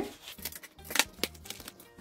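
Paper bills and a ring binder's plastic cash pocket being handled on a desk: a few sharp clicks and rustles, the loudest about halfway through.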